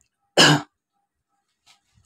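A person clears their throat once, briefly, about a third of a second in.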